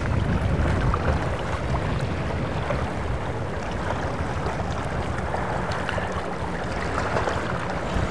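Outboard motors of a center-console patrol boat running slowly close by: a steady low rumble under an even hiss of wind and water.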